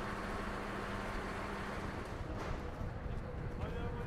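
A mobile crane truck's engine running with a steady low hum over a wash of open-air noise; the hum breaks off about halfway through.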